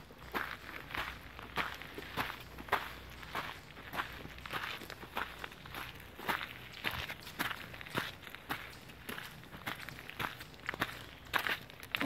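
Footsteps walking through dry leaf litter on a forest floor, a crunching step about twice a second.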